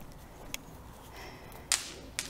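Brief rustle of dry plant stalks or straw being brushed: a faint tick about half a second in, then one short, sharp swish near the end, the loudest sound here.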